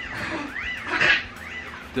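A small pet whining in several high cries that rise and fall in pitch, with a short louder breathy sound about a second in.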